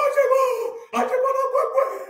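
A man crying out long, drawn-out 'ohh' calls in a raised voice, two in a row, each held for about a second at a steady pitch.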